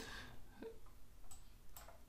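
Very quiet room tone with a few faint, soft ticks.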